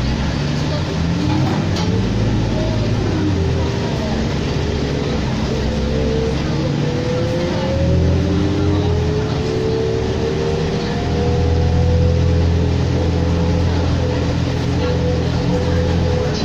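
2004 New Flyer D40LF diesel city bus heard from inside the cabin while driving: a low engine drone with whines that climb over several seconds as it speeds up, then hold steady while the drone swells and eases.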